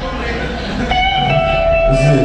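Live rock band playing through amplifiers, electric guitar and bass to the fore, with a long held note coming in about a second in.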